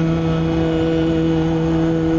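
Title-song music: a male voice holds one long, steady sung note over the accompaniment.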